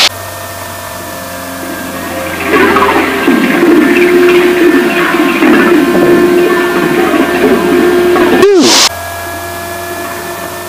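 Citabria 7KCAB's four-cylinder Lycoming engine and propeller heard from inside the cockpit during an aerobatic manoeuvre. It starts as a steady drone, grows louder about two and a half seconds in with its pitch sliding up and down as the plane dives, and after a brief loud whoosh near the end settles back to a quieter steady drone.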